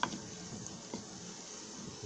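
Meat, onions and herbs frying in oil in a pan, a faint steady sizzle, as a wooden spatula stirs through them.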